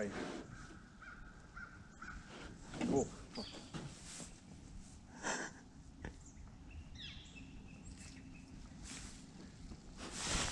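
Quiet outdoor background with faint bird calls, one short pitched call about seven seconds in, and a few soft knocks.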